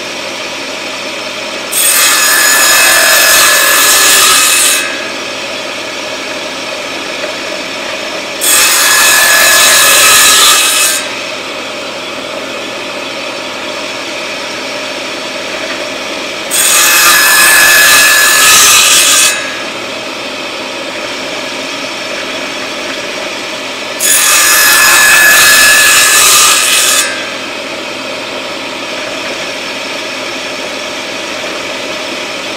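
Table saw running steadily, its blade cutting four narrow 3/8-inch wooden strips one after another. Each cut lasts about three seconds and is much louder and higher than the steady spin of the blade between cuts.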